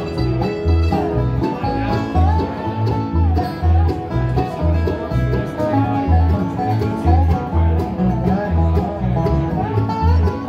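Live bluegrass band playing an instrumental passage: banjo rolls, strummed acoustic guitar and mandolin over an upright bass pulsing about twice a second, with a gliding slide-guitar lead line. Recorded on a phone.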